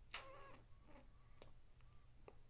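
Near silence: room tone with a steady low hum, a faint brief wavering sound near the start and a couple of soft clicks.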